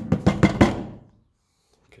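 Old toy drum patted with the flat of a hand: a quick run of about six taps that stops about a second in.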